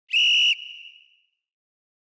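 A single short, high whistle note of steady pitch, about half a second long, with a brief fading tail.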